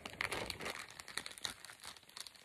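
Plastic bait packaging crinkling as it is handled, a run of small irregular crackles.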